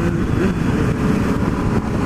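Honda CB600F Hornet's inline-four engine running steadily as the motorcycle cruises, with wind noise rushing over the microphone.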